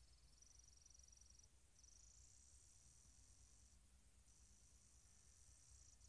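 Faint, high-pitched whine from a car head unit's DVD drive spinning a disc. It rises in pitch, holds, breaks off twice briefly, then dips and climbs again near the end. The drive keeps spinning up without playing, which fits a drive that cannot read discs.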